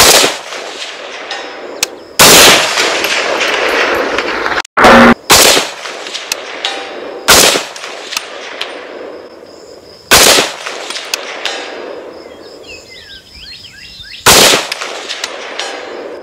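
PSA JAKL 300 Blackout rifle firing supersonic rounds, about seven shots at uneven intervals of one to four seconds, each shot followed by a long rolling echo.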